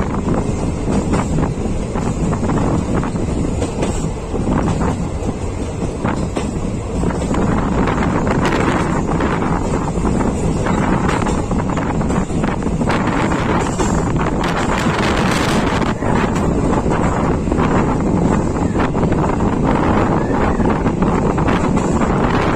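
Passenger train running at speed, heard from a coach window: a steady rumble of wheels on the track with frequent irregular clicks and knocks, and heavy wind buffeting the microphone.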